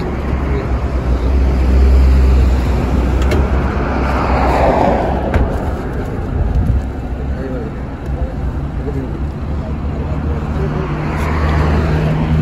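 Road traffic noise with a low engine rumble. A vehicle swells past about four to five seconds in, and there are a few faint light knocks.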